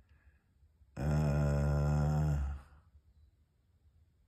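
A man's low, drawn-out wordless vocal sound while thinking, held at one steady pitch for about a second and a half, starting about a second in.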